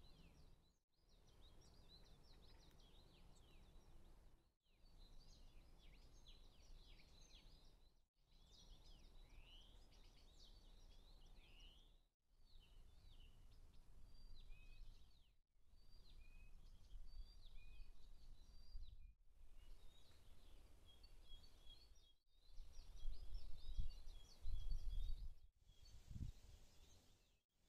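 Small songbirds chirping and trilling, heard in a string of short clips a few seconds each, separated by brief dropouts. A low wind rumble on the microphone runs underneath and grows much louder near the end.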